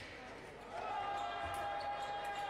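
A person's voice in one long shout held at a steady pitch, starting under a second in.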